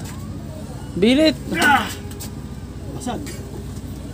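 A man's voice gives two loud, drawn-out exclamations about a second in, and a shorter one near three seconds. Beneath them a steady low rumble runs throughout, the Honda Click 125 scooter's single-cylinder engine idling.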